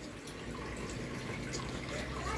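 Whole cumin seeds sizzling faintly in hot oil in a frying pan: the tempering step before the rest of the dish goes in.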